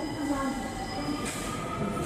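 Subway train pulling into a station platform, its electric drive whining in several sustained tones that slowly shift in pitch over steady rail and wheel noise.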